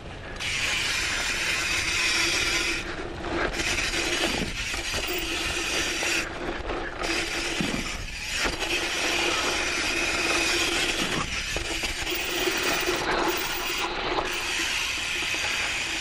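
Rear freewheel hub of a dirt jump bike ratcheting in a fast, steady buzz as the bike coasts over dirt, with tyre noise under it. The buzz cuts out briefly three times.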